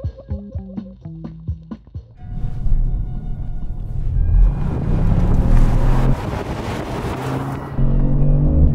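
Background music with plucked notes. From about two seconds in, the Kia Stinger GT1's 3.3-litre V6 and its road and wind noise swell and stay loud as the car accelerates hard.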